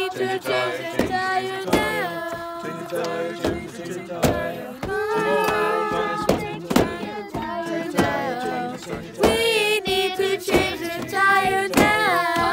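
A group of children and teenagers singing a repetitive 'change a tire' chant, with a sharp hand-beat about once a second keeping time.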